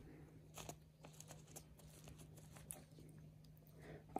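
Near silence: room tone with a low steady hum and a few faint soft ticks from fingers handling a pellet-filled PVA bag.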